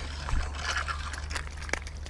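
Scraping and crunching handling noise with a few sharp clicks, over a steady low rumble, as a just-caught bass is brought in by hand on the bank.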